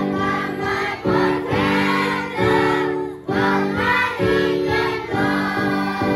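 A class of second-grade children singing a song together as a choir, over sustained accompanying notes that change every second or so.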